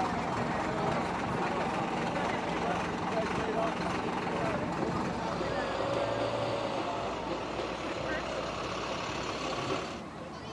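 A bus engine running steadily, with people talking over it.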